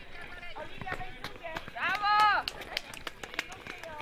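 Scattered hand clapping, with one loud drawn-out call from a person about two seconds in, its pitch rising then falling.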